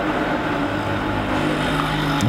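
A steady engine drone.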